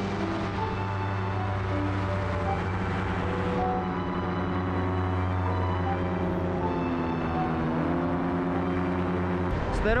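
Paramotor engine and propeller running steadily in flight: a deep, even drone that holds without change of pitch.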